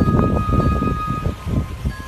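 Wind buffeting a phone microphone outdoors: a rough, uneven low rumble, with a thin steady high whine running over it until near the end.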